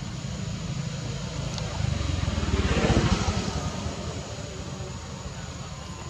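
Low engine rumble from a passing vehicle or aircraft, swelling to a peak about three seconds in and then fading.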